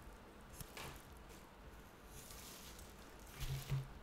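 Soft rustling and handling of paper at close range, in a few short bursts with a small click about half a second in. Near the end comes a short low chuckle, the loudest sound.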